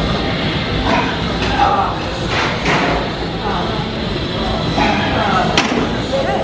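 Background music and indistinct voices in a gym, with a single sharp knock near the end.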